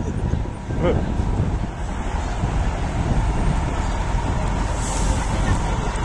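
Street traffic passing close by, a steady rumble of car engines and tyres on the road, with a short laugh about a second in.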